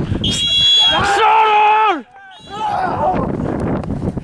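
Voices cheering a goal: a long, loud held yell that cuts off suddenly about two seconds in, followed by more shouting.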